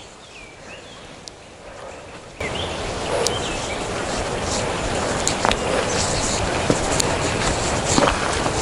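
A few small birds chirping in quiet countryside; about two and a half seconds in a steady rushing noise with a low rumble sets in suddenly and stays, with a few sharp clicks over it.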